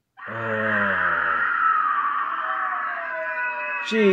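Horror film soundtrack: a dense, sustained, eerie layered sound of wailing voices or score starts suddenly just after the start, its pitches shifting near the end.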